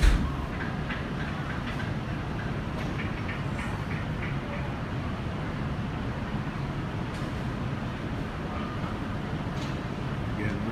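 Steady low mechanical hum and rumble, with a sharp thump right at the start and a few faint clicks and distant voices over it.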